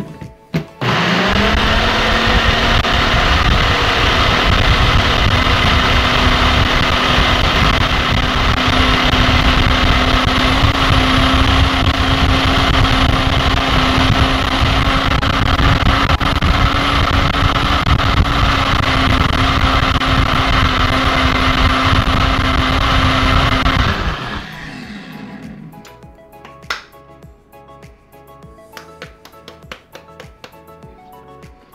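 Single-serve bullet-style blender running with a steady motor whine as it purees a thick herb and mayonnaise sauce. The motor spins up about a second in and cuts off a few seconds before the end, winding down.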